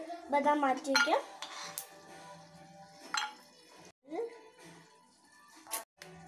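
A steel spoon clinking against a frying pan and a steel plate as fried pieces are stirred and lifted out, three sharp clinks spread across a few seconds.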